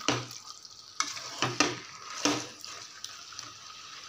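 Perforated metal spoon stirring and scraping chicken pieces in thick masala inside an aluminium pot, with a handful of sharp clinks against the pot in the first two and a half seconds. A faint steady sizzle sits underneath.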